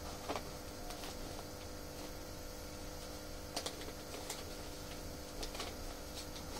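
A pause in speech filled by the low, steady hum and hiss of the broadcast, with a few faint clicks, the clearest about three and a half seconds in.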